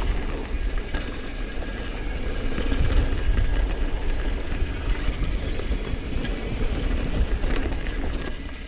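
Mountain bike descending a packed-dirt trail at speed: tyres rolling over the dirt, the bike rattling, and heavy wind buffeting on the camera microphone.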